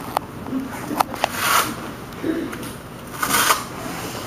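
Police riot gear being handled. There are a few sharp clicks in the first second or so, then two bursts of rustling, about a second and a half in and again past three seconds.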